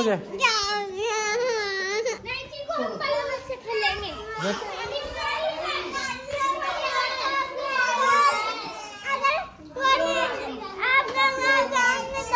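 Children's voices, talking and calling out over one another almost without a pause.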